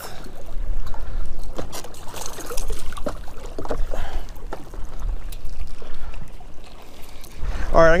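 Wind buffeting the microphone in a low rumble, with choppy water lapping against a kayak hull and scattered small knocks.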